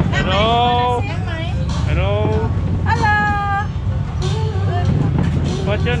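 People's voices, with a higher voice holding one note briefly about halfway through, over a steady low rumble.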